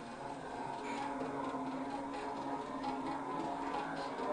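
Quiet passage of Hindustani classical music: a steady held drone pitch sounds under faint light strokes.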